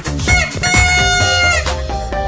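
A party blower blown in one long buzzy note lasting about a second, over dance music with a steady beat.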